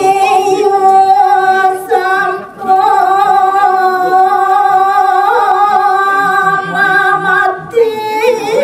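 A woman singing Balinese geguritan verse solo into a handheld microphone, without accompaniment. She holds long drawn-out notes with a slight waver, breaking briefly about two and a half seconds in and again just before the end.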